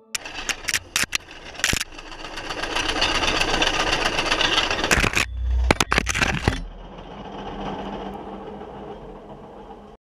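Metal rattling and clattering of a DIY railroad speeder on the rails, growing louder to a peak and then fading. It opens with a few sharp clicks and has a heavy low thump partway through.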